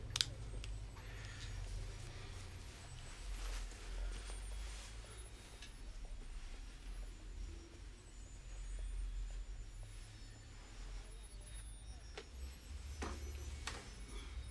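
Quiet room tone: a steady low hum, with a few faint clicks and small movement sounds, one sharp click just after the start.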